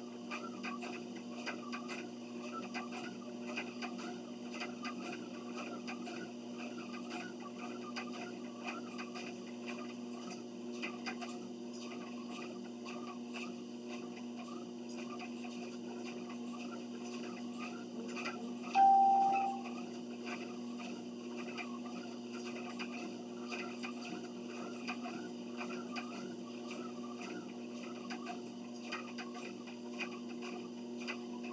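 Treadmill running, with a steady motor hum and the regular soft thud of footsteps on the belt. A single short beep from the console a little past the middle is the loudest sound.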